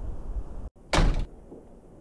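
A single loud door slam about a second in, sudden and short, right after the sound cuts out completely for an instant; a low rumble lies under the sound before it.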